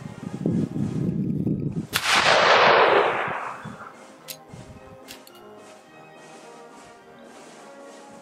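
A single shot from a Martini-Henry Mk I rifle firing a .577/450 black-powder cartridge: a sharp report just before two seconds in that rolls away over the next two seconds, with a low rumbling noise just before it. Two short clicks follow as the action is worked to extract the spent case, over faint background music.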